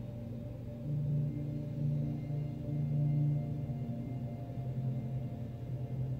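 Ambient background music of low, sustained drone tones that swell and ebb, with a gong-like ring.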